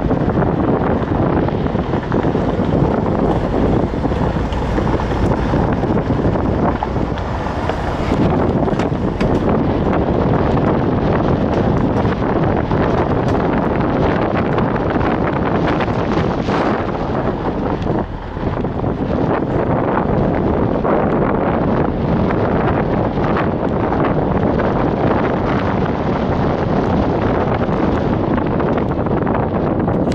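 A car rolling slowly along a gravel and dirt lane, heard from inside the car: steady tyre and road rumble with small crunches and knocks from the gravel, and wind buffeting the microphone.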